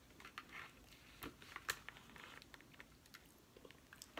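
Faint close-up chewing of a soft cookies-and-cream cheesecake: small wet mouth smacks and clicks, a couple of sharper ones a little over a second in.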